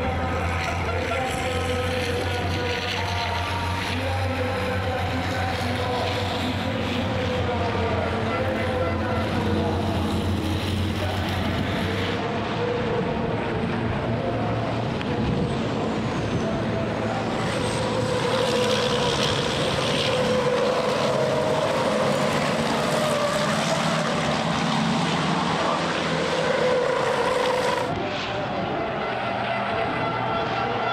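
Several racing trucks' turbodiesel engines running hard at race speed as they pass in a close pack. The sound changes abruptly about twelve seconds in and again near the end.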